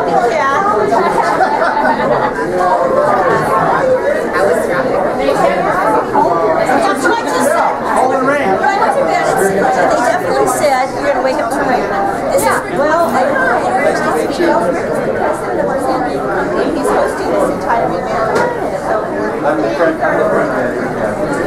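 Crowd chatter in a large room: many people talking at once in overlapping conversations, a steady hubbub.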